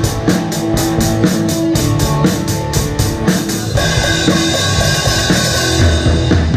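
Live rock band playing, heard close to the drum kit: drums, electric guitar and bass. The drum beat keeps a steady stroke about four times a second, then changes feel a little over halfway through.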